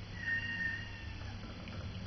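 Domestic cat giving a thin, high-pitched squeaky call of about a second while eating, the pitch sliding slightly downward, over a steady low hum.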